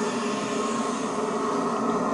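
Soundtrack of the television episode: a steady, dense drone with several sustained tones underneath it.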